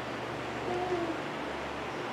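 Steady whirr of a wall-mounted electric fan, with a faint short tonal call about a second in.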